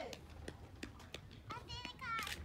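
A person's voice calls out briefly near the end, over a few faint, scattered clicks.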